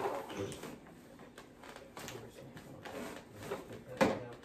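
Quiet room with faint scattered taps and rustles from gingerbread pieces and plastic packaging being handled, and a few soft low voice sounds.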